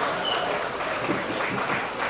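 Football ground ambience: scattered clapping over the open-air background, with faint distant voices.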